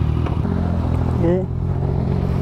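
Honda X-ADV's 745 cc parallel-twin engine idling steadily in neutral.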